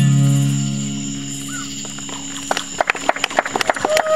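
Final strummed chord on an acoustic guitar ringing out and slowly fading, then scattered clapping from a small audience starting about two and a half seconds in.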